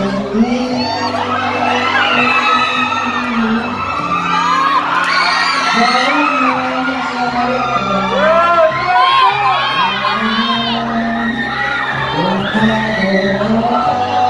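An audience cheering and screaming in many high voices over an instrumental backing track with a steady bass line.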